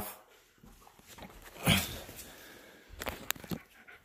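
Belgian Malinois dogs moving about close by, with one short, loud dog vocalization about halfway through and a few sharp clicks and knocks near the end.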